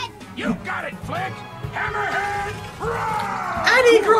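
Anime soundtrack: background music under loud cartoon voices shouting and yelling during a fight scene.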